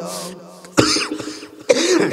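A man coughing into a close microphone between sung phrases: a sudden cough about three-quarters of a second in, and a second, throat-clearing burst shortly before the end.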